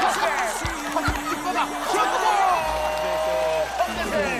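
Several men shouting and whooping in goal celebration over edited music and sound effects, with two short low booms about a second in.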